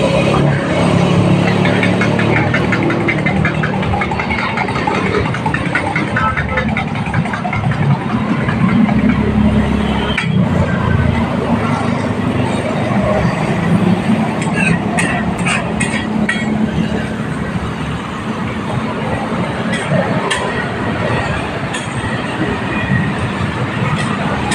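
Busy street-stall ambience: motor traffic running with a passing swell about a third of the way in, under background voices. Sharp metallic clicks of a metal spatula against the flat-top burger griddle come in clusters in the second half.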